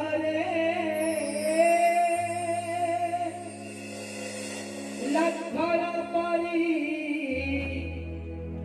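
A voice singing a drama song in long, wavering held notes over a steady low instrumental drone, with a quieter lull in the middle and the singing taking up again about five seconds in.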